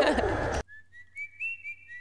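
A group of girls cheering together in one held high 'woo' that falls away. After an abrupt cut, a faint run of short whistled notes steps upward in pitch.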